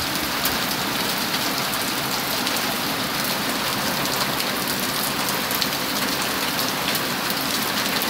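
Heavy rain mixed with pea-sized hail: a steady rush of downpour with many small, sharp clicks of hailstones striking.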